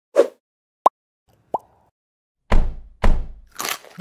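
Cartoon-style sound effects of an animated logo intro: two quick rising plops, then two heavy booming hits about half a second apart, and a short swish near the end.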